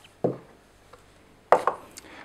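Hard plastic knocks as the radio's desktop charging cradle and other parts are handled and set down in the box's plastic tray: a dull knock about a quarter second in, then a sharper, louder clatter of a few clicks at about one and a half seconds.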